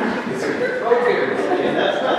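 A group of people talking at once in a large room: overlapping chatter with no single clear voice.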